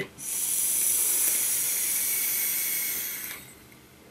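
Vape atomizer coil firing during a long drag: a steady sizzling hiss that stops a little over three seconds in.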